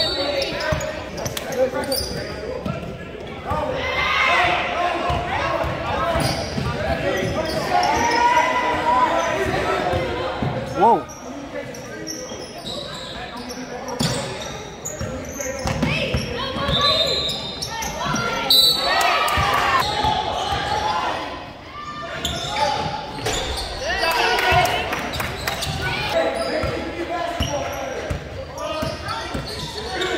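A basketball dribbling and bouncing on a hardwood gym floor, under steady shouting and chatter from players, coaches and spectators, all echoing in a large gym. A brief sharp squeak stands out about eleven seconds in.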